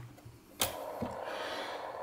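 A headphone plug pulled from the jack of a homemade CW QRP transceiver with a click about half a second in. The receiver's audio then comes back on the internal speaker as a steady hiss of 40-meter band noise.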